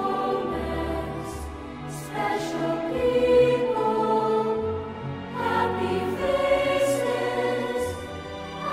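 Choral music: a choir singing slow, long held notes over an accompaniment.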